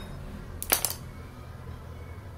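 A quick cluster of small sharp clicks and clinks a little under a second in, as the loose parts of a power window motor's plastic carbon-brush holder are handled. A low steady hum sits underneath.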